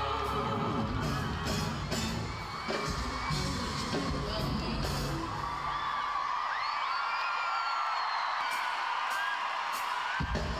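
Live pop concert: a female vocal group singing over a band with a heavy beat, and about halfway through the music drops away into a crowd screaming and cheering, with high whoops.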